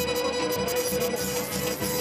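Live Balkan folk dance music played with a quick, steady beat under one long held note, with a violin in the band.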